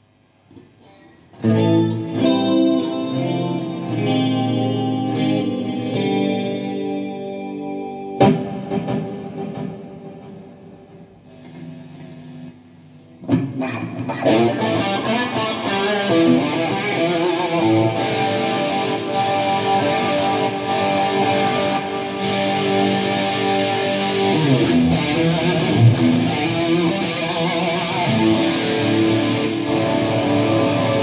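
Electric guitar played through a Marshall JMP-1 preamp, JFX-1 effects unit and 9100 power amp into Marshall speaker cabinets. It starts with chords left to ring and fade, with a fresh strum about eight seconds in. About thirteen seconds in it switches to a louder, distorted sound with continuous riffing.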